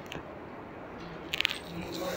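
A short burst of quick small clinks about one and a half seconds in, over faint room noise.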